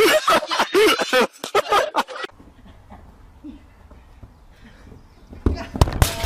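Loud men's voices shouting for about the first two seconds, then a stretch of low background hum. A few sharp knocks come near the end.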